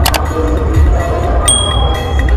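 Subscribe-button animation sound effect: a mouse click at the start, then a single bright bell ding about a second and a half in, ringing briefly. Underneath runs loud, bass-heavy music.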